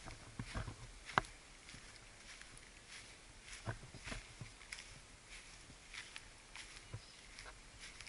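Quiet, uneven footsteps walking through short grass, with occasional soft crunches and clicks.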